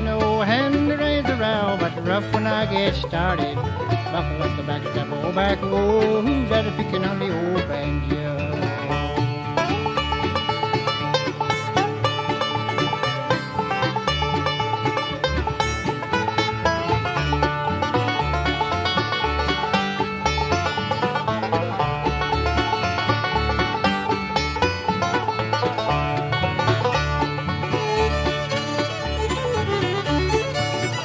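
Bluegrass band playing an instrumental break: banjo and fiddle over rhythm guitar and bass.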